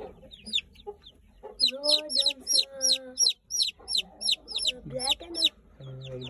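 A group of young chicks peeping: rapid, high-pitched chirps, densest between about one and a half and three seconds in. They are making this noise after being separated from their mother hen. A lower, drawn-out call sounds beneath them around two to three seconds in.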